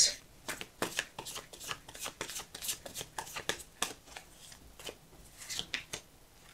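A deck of Light Seer's Tarot cards being shuffled hand to hand: a quick, irregular run of soft card slaps and flicks that thins out near the end.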